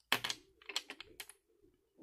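Diamond-topped pens clicking and clattering against one another as one is picked out of the bunch: a quick run of light clicks in the first second and a half.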